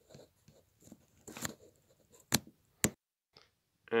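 Handling rustle and small clicks as a shotgun microphone's plug is worked into a phone's earphone adapter, with two sharp clicks about half a second apart near the end. The sound then cuts out completely for about a second as the phone's audio input switches over.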